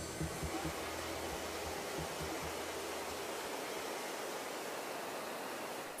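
Steady cabin noise of a C-130 transport aircraft: an even hiss with a faint low rumble that fades out about halfway through.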